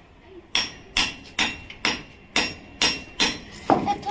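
A hand hammer striking a steel chisel into concrete and brick rubble, eight blows at about two a second. Each blow gives a short metallic ring, and the last one near the end is the loudest.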